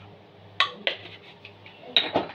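A metal spoon clinks on a stainless steel tray as paprika is spooned out: two sharp clinks about a quarter second apart, then a few lighter taps and another clink near the end.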